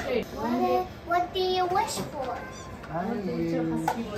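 A house cat meowing in a few short, wavering calls, one longer call about a second in, among low voices at a table.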